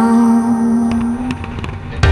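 Music ends on a held low note that stops past the halfway point, leaving a short gap with a few scattered sharp bangs and crackles of aerial fireworks shells.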